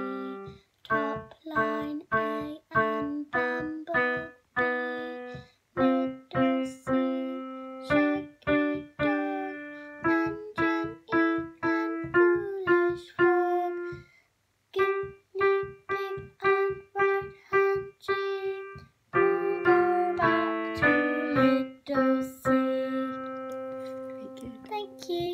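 Piano keyboard played by a young beginner: single notes struck one after another, about two a second, each dying away or cut short before the next. A short pause about two-thirds of the way in, then a few notes sounding together near the end.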